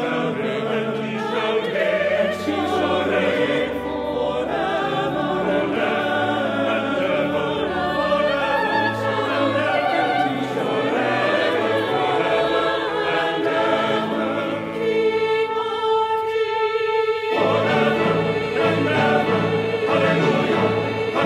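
Mixed choir of men and women singing together, with instrumental accompaniment.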